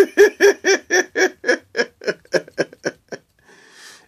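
A man laughing: a long run of short "ha" pulses, about four a second, that slow down and fade out about three seconds in.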